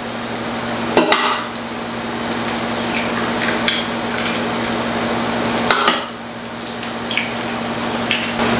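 Eggs being knocked and cracked on the edge of a bread machine's pan, a few sharp knocks with the clearest about a second in and just before six seconds, over a steady hum.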